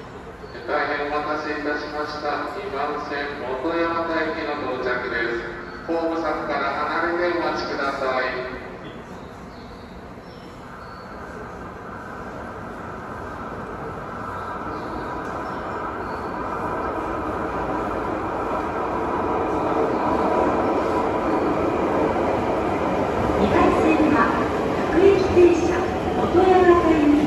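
Toei Shinjuku Line subway train approaching and pulling into an underground platform. Its running noise, with a steady whine, grows gradually louder over the second half.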